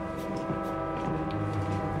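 A sustained droning chord of steady held tones from the background score, with a deeper low note coming in a little past the middle.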